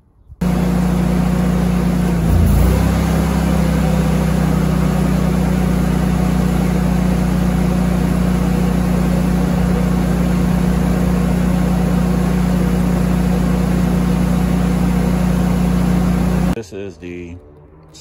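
Generac Guardian Series standby generator running steadily with a low hum. About two seconds in, the heat pump compressor starts across the line without a soft starter, and the generator bogs: a short louder surge and a brief drop in pitch, then it recovers. This load is the sign of the compressor's high starting current, which causes a voltage dip in the house.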